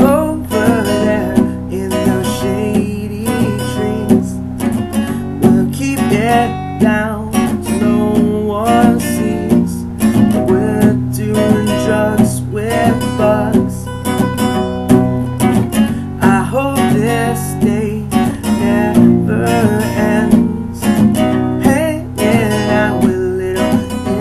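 A man singing a song while strumming an acoustic guitar.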